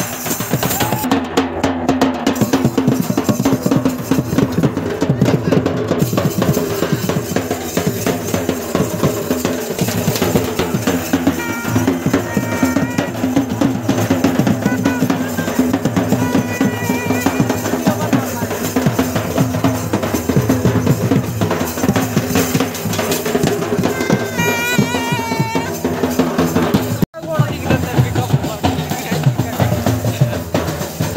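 Fast, continuous festival drumming: a snare-type side drum struck with sticks and steel pots and vessels beaten as percussion, with voices shouting over it. The sound drops out suddenly for an instant near the end.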